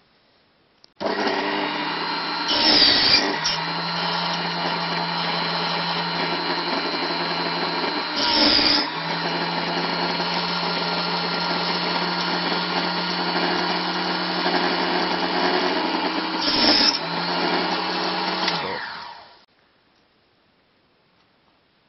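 A small bench-top table saw starts up about a second in and runs steadily. The blade cuts through pine sticks three times, each a brief louder rasp. Near the end the motor is switched off and winds down to a stop.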